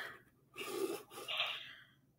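A person breathing close to the microphone: two short, soft breaths in quick succession.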